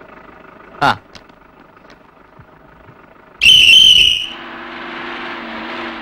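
A bus conductor's whistle blows one sharp, high blast for under a second about halfway through. After it the bus engine runs with a steady drone, as the bus moves off at the signal. Before the whistle there is a faint low hum.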